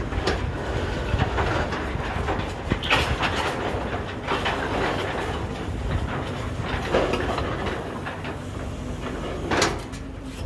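Truck-mounted borewell drilling rig running with a steady low rumble, with a few louder, short surges through it.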